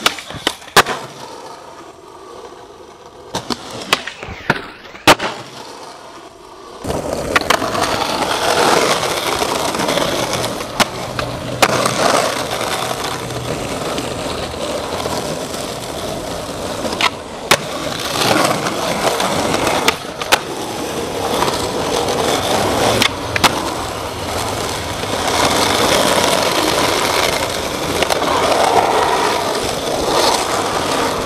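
Skateboard: a few sharp pops and board clacks on concrete in the first seconds, then skateboard wheels rolling loudly and steadily over rough asphalt, with an occasional clack.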